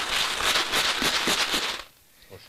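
Small hard candies rattling inside jars being shaken by hand, in quick regular strokes about four to five a second, stopping shortly before the end.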